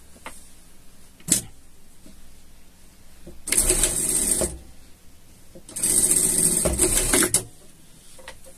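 Industrial sewing machine stitching a short seam in two brief runs: about a second of sewing, a pause, then about a second and a half more. A single sharp click comes about a second in.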